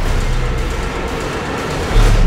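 Horror-trailer sound design: a loud, dense rattling clatter over a low rumbling drone. It gives way to a deep boom at the very end.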